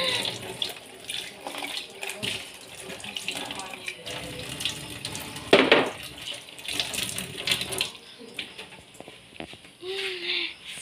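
Kitchen tap running water into a sink, fading out about eight seconds in, with a brief louder knock about halfway through.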